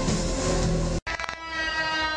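Live rock band led by a Fender Stratocaster electric guitar, drums under it. About a second in the sound cuts out for an instant at an edit. It comes back on one long held electric guitar note, ringing steadily with many overtones.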